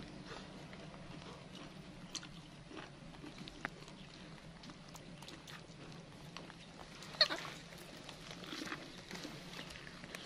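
A young macaque gnawing corn on the cob, giving quiet eating sounds with faint scattered clicks, and one short high squeak about seven seconds in.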